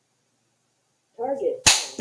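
Quiet at first, then a brief vocal sound and a single sharp smack near the end, followed by a short burst of noise.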